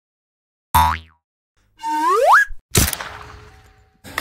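Cartoon-style intro sound effects: a sudden hit with a quickly falling tone, then a tone that glides steeply upward, then a sharp crash that dies away over about a second.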